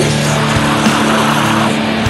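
Blackened drone doom metal: heavily distorted electric guitar holding one low, sustained chord with a dense noisy wash above it, moving to a new chord right at the end.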